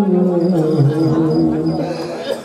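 A man wailing in long held notes through a stage PA, the pitch stepping down as the cry goes on. Under it, a faint high chirp repeats about five times a second, like a cricket.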